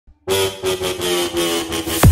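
Electronic intro sound effect: a loud engine-like buzzing tone starts about a quarter second in and wavers in loudness, building up toward the intro music.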